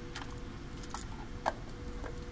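A bunch of keys with a padlock jangling in a few short clicking rattles while a plastic gate valve lockout cover is handled and fitted over the valve handwheel; the sharpest click comes about one and a half seconds in.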